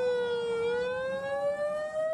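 A siren wailing slowly, its pitch falling for about half a second and then rising again.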